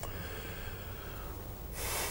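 A faint steady background hiss, then a short breath drawn in close to the microphone near the end.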